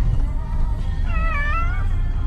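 A cat meowing from inside a plastic pet carrier in a car: one drawn-out, wavering meow about a second in, with a fainter meow before it, over a steady low rumble.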